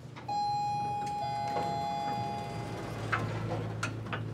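Elevator arrival chime: two ringing notes, the second a little lower than the first and coming in about a second later, both fading out after about two seconds. A few soft clicks follow near the end.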